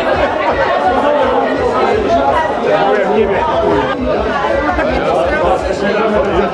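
Overlapping chatter of many people talking at once in a large room.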